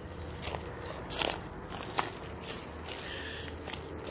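Footsteps crackling and crunching on dry leaf litter and pine needles, a few scattered steps.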